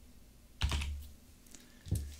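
Computer keyboard being typed on: two separate keystrokes, one about half a second in and one near the end, each a short click with a dull thud.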